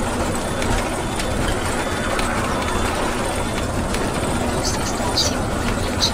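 Steady engine and road noise inside a motorhome's cab while it drives along a highway.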